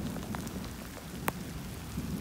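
Steady rain falling on wet, muddy ground during a thunderstorm, with a single sharp tick a little past halfway.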